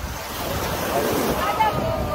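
Sea waves breaking and washing up on a sandy shore, with wind buffeting the microphone.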